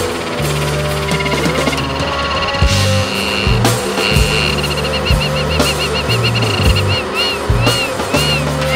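Instrumental passage of a rock song: bass guitar notes and drums under a high wavering tone that, from about halfway through, pulses in quick repeated swoops.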